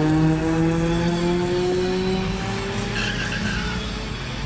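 Car engine accelerating hard down a drag strip, its pitch climbing slowly as it pulls away, then fading out over the last second or so.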